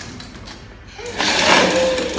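Hard plastic wheels of a toddler's ride-on toy car rolling across a tiled floor. The rolling starts about a second in.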